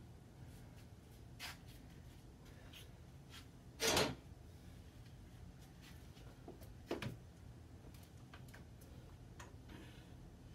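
Workshop handling noise at a wood-lamination glue-up: scattered small clicks and knocks of clamps and wood strips on a bending jig, with one louder knock about four seconds in and a sharper one about three seconds later.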